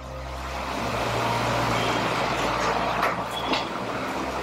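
A rushing noise that builds over the first second or two and eases a little near the end, the kind of sound a passing road vehicle makes.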